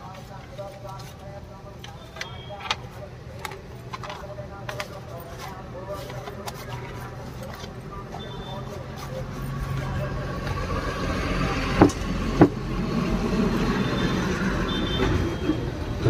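Paper crinkling and rustling in short clicks as a sheet is handled and rolled into a cone, over faint background voices. A motor vehicle's engine rumble builds from about ten seconds in, with two sharp knocks shortly after.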